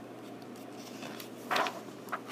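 A picture-book page being turned by hand: one short paper swish about one and a half seconds in, over quiet room tone.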